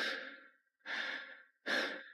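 A man breathing heavily, three loud, sharp breaths a little under a second apart.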